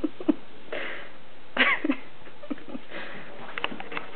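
An English springer spaniel rubbing and burrowing into a bed's comforter to dry off after a bath: short bursts of sniffing and breathing noise with bedding rustle, the loudest about one and a half seconds in, and a few sharp clicks near the end.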